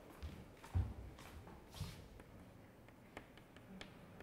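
Faint footsteps on a hard classroom floor in the first two seconds, then a few light sharp taps near the end as chalk starts on a blackboard.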